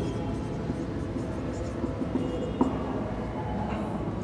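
Marker pen writing on a whiteboard: faint strokes and a brief light squeak over a steady low background hum.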